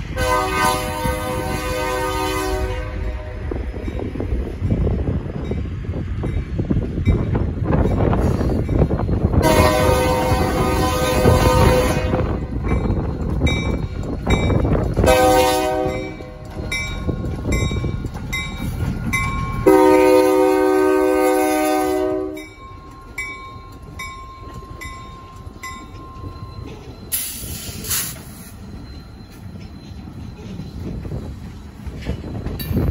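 Ex-BN EMD SD40-2 diesel locomotive sounding its horn in the grade-crossing pattern, long, long, short, long, over the rumble of its 16-cylinder two-stroke engine as it approaches and passes. After the last blast the engine sound drops away and the covered hopper cars roll by with clicking wheels.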